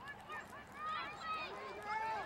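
Several women's voices shouting and calling out over one another in short, high calls during open play in a rugby match.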